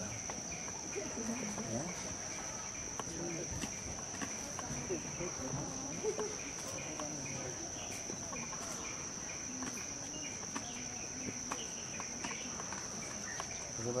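Insects singing: one steady, high, unbroken drone, with a lower chirp pulsing evenly about three times a second, and a few faint clicks scattered through.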